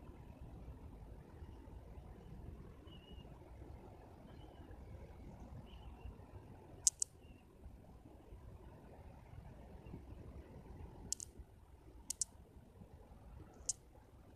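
Faint, steady room noise with a few sharp clicks: a quick pair about seven seconds in, then single and paired clicks near the end.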